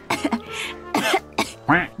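A voice coughing and choking, with about three short coughs, as if on a bite of food. Quiet background music runs underneath.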